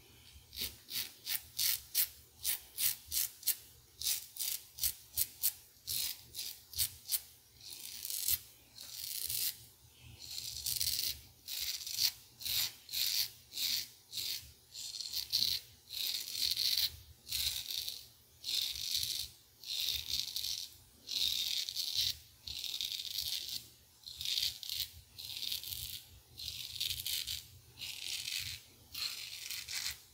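Merkur 34C double-edge safety razor with a Voskhod blade scraping through lathered two-day stubble. It starts with short quick strokes, two to three a second, and after about ten seconds moves to longer strokes about once a second.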